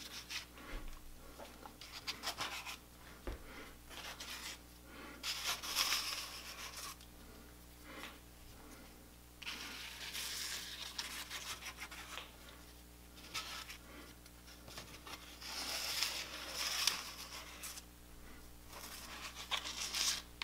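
A plastic scraper being dragged through wet Woodland Scenics Smooth-It plaster to spread and level it over a taped model roadway: soft, irregular scraping strokes that come in several bursts of a second or two each, with quieter pauses between.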